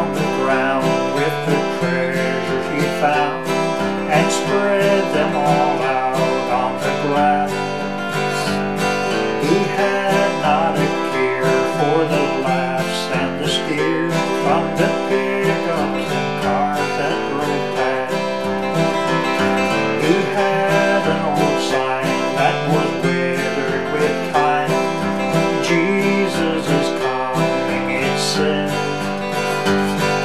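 Steel-string dreadnought acoustic guitar playing an instrumental break unaccompanied, strummed and picked at a steady pace.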